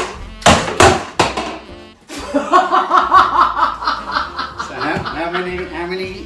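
A few sharp knocks in the first second or so, then people laughing over background music.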